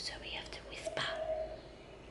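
Soft whispered voices of a woman and a small child, with a brief voiced sound about a second in, then quieter.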